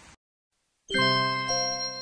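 Silence, then about a second in a bell-like chime starts a short music jingle, its notes ringing on, with a second note struck about half a second later.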